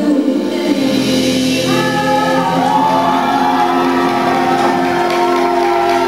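Live band with a male and a female singer singing a duet together, holding long notes with sliding vocal runs over drums and bass guitar.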